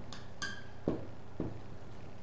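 Dry-erase marker writing numbers on a whiteboard: a few short, separate strokes about half a second apart, one with a brief squeak.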